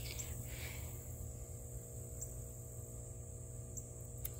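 Steady high-pitched insect chorus with a low rumble underneath, and a brief soft rustle about half a second in.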